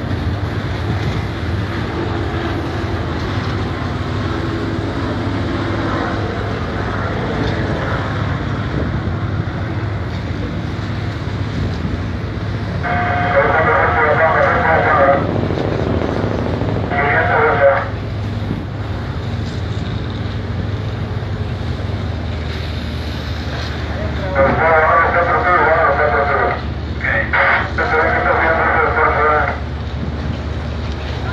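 Steady low drone of a tuna purse seiner's engine, mixed with wind and sea noise. Short passages of voices come through over it about halfway through and again near the end.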